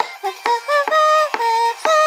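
Synthesized singing voice carrying a melody of short notes, each held at one level pitch and jumping to the next, with a sharp click at the start of each note.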